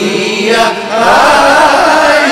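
A voice singing a melody in Hindustani raga style over musical accompaniment, the notes ornamented and wavering, louder and more sustained from about a second in.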